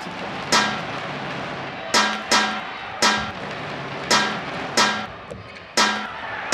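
Badminton rackets striking the shuttlecock in a fast drive exchange: a string of sharp smacks at uneven intervals, some coming in quick pairs.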